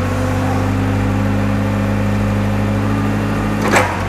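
Nissan 2-ton forklift's engine running at raised speed while its hydraulic lift raises the mast and forks, a steady engine hum. A single sharp knock near the end, as the lift stops.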